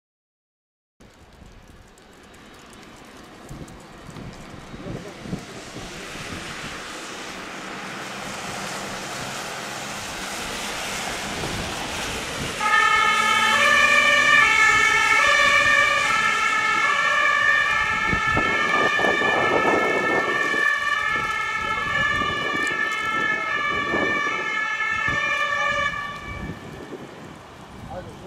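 A vehicle's engine and tyres grow steadily louder. Then the ambulance's German two-tone siren switches on suddenly and alternates between its two pitches for about thirteen seconds before cutting off. An engine can be heard pulling hard under the siren partway through.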